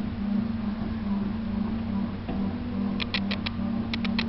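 Steady electrical mains hum from the power equipment and meters, with a quick run of four sharp clicks about three seconds in.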